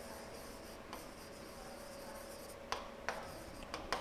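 Faint writing strokes on a board as a word is handwritten, with a few light ticks of the pen tip, over a thin steady hum.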